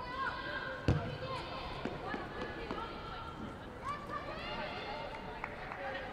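Women footballers shouting and calling to one another on the pitch, with one sharp thud of the ball being kicked about a second in.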